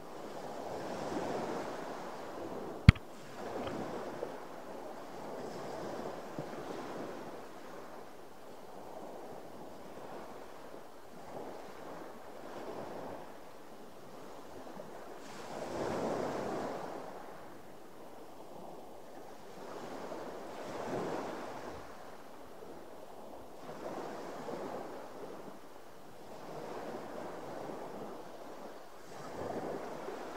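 Sea water lapping against the side of a boat, swelling and fading every few seconds. One sharp click comes about three seconds in.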